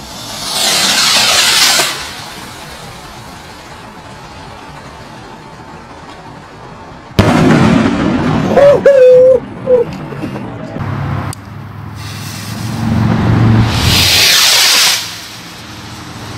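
Ghost Warrior salute rockets going off: rushing launch hisses and sudden loud reports.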